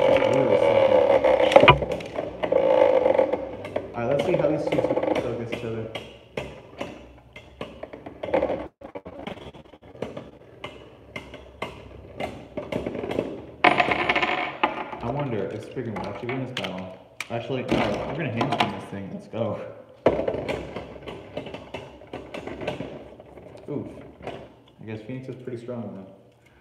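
Beyblade Burst spinning tops battling in a clear plastic stadium: rapid clacks and rattles as the metal-and-plastic tops strike each other and the bowl wall, dense and loud in the first few seconds, then sparser knocks with a louder flurry about halfway through.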